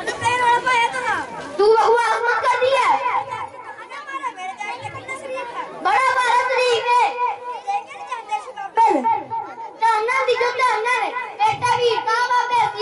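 Children's voices speaking skit dialogue into handheld microphones, heard over a public-address system.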